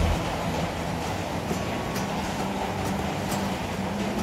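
A steady rumbling background noise, with a few faint clicks.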